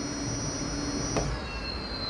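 Super Soco CPx electric motor whining at high pitch as the rear wheel spins freely with no load at about 70 mph on the speedometer. About a second in there is a click, the lower hum drops out, and the whine thins to a single tone that begins to fall as the wheel slows.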